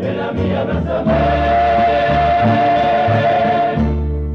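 A rondalla, a male student chorus with plucked-string accompaniment, holding one long sung note from about a second in until near the end, over a bass line that moves from note to note.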